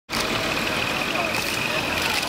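Motor vehicle engine running on the street, a steady noise with a thin high-pitched whine over it, and voices mixed in.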